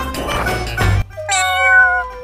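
Rhythmic background music that stops about a second in, followed by one long meow, falling slightly in pitch.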